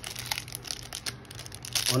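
Foil Pokémon TCG booster pack wrapper crinkling in the hands as it is opened and crumpled: a run of small irregular crackles.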